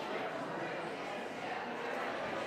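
A congregation's crowd chatter: many people greeting one another and talking at once, a steady babble of overlapping voices with no single speaker standing out.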